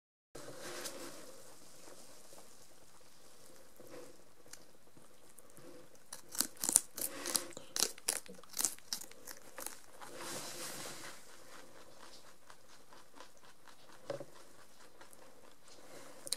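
Lop-eared rabbits biting and chewing a fresh celery stalk, with a quick run of crisp crunches from about six to nine seconds in and scattered nibbling otherwise.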